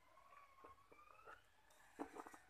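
Near silence: faint room tone, with a faint background tone that slowly dips and then rises in pitch, and a few faint clicks.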